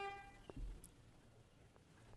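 A short, steady electronic beep that ends just after the start, then a faint knock about half a second in; otherwise near silence.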